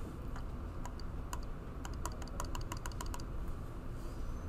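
Computer keyboard keys tapped in a quick, uneven run of about fifteen clicks, thickest in the middle and stopping about three seconds in, over a low steady room hum.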